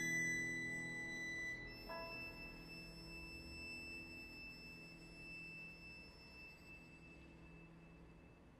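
A c. 1740 Pietro Guarneri of Venice violin holds a soft, high bowed note that moves to a second note about two seconds in and then fades away slowly at the close of a quiet phrase. Beneath it a low piano chord is left ringing and fades along with it.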